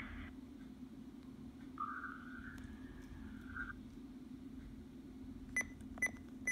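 Radio Shack Pro-668 digital scanner between recorded transmissions: a faint steady hum, then a soft electronic tone that steps up in pitch partway through and lasts about two seconds. Near the end come two short beeps as its keys are pressed to move to the next recording.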